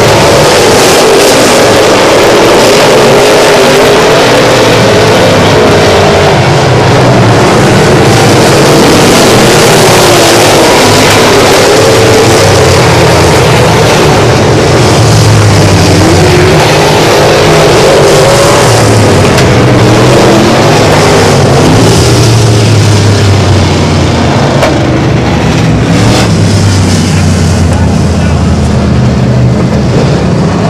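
Several dirt-track super stock race cars running hard together in a pack, their engines loud and continuous, the pitch rising and falling as the drivers get on and off the throttle through the turns.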